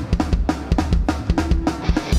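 Ska-punk band playing live without vocals: a drum kit keeps a steady beat of about four hits a second under electric guitars, bass guitar and trombone.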